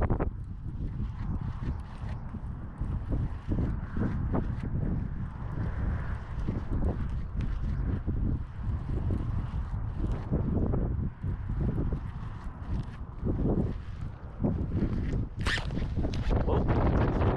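Wind buffeting the camera microphone with an uneven low rumble that rises and falls. Near the end comes a sharp rustle as a hand brushes the camera.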